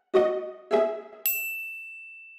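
Last two plucked notes of a short intro jingle, then a single high, bright ding just over a second in that rings on and slowly fades.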